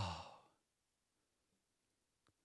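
A man's long, breathy sigh into a handheld microphone, an exaggerated blissful "oh", fading out about half a second in, then silence.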